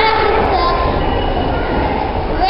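Children's voices in a room over a steady low rumble.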